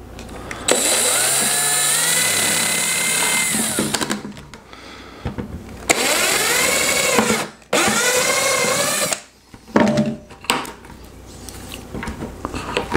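Cordless drill boring a hole through the plastic wall of a 5-gallon bucket, in three runs: a long one of about three seconds, then two shorter ones close together past the middle. Each time, the motor's whine rises as it spins up and drops as it stops.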